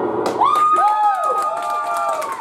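Small club audience cheering and shouting "woo" right after a song ends, with one long held shout starting about half a second in and a little clapping.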